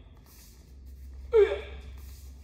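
A taekwondo kihap: one short, loud shout about a second and a half in, falling in pitch, given with a reverse punch in front stance.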